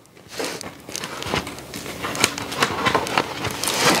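Thick, painted art journal pages sealed with acrylic spray sealer and cold wax medium being turned: paper rustling with many small crackles. The pages come apart without the ripping noise of sticky pages.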